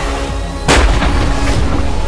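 Dark trailer music with sustained held tones, hit by a single heavy boom-like impact about 0.7 s in that lingers for a moment.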